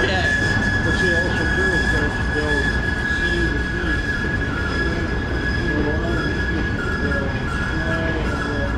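Freight cars of a passing freight train rolling by with a steady low rumble, and wheel squeal holding one high-pitched tone throughout.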